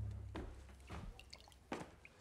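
A low note from a music cue dies away, then a few faint footsteps on a wooden staircase, spaced unevenly.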